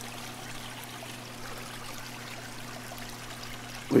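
Aquarium water trickling steadily, with a low steady electrical hum underneath.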